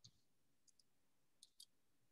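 Faint computer keyboard keystrokes over near silence: about five light clicks, some in close pairs.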